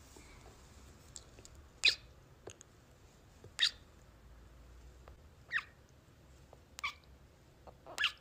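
Kisses close to a phone's microphone: four short lip smacks, spaced about one and a half to two seconds apart, fairly faint.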